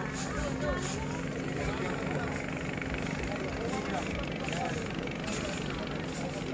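A steady low motor hum, with indistinct voices of people around it.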